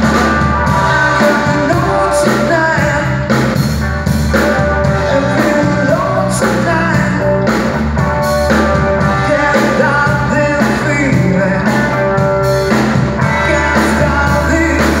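A live rock band playing: lead vocals sung over electric guitar, bass guitar and drum kit, loud and continuous.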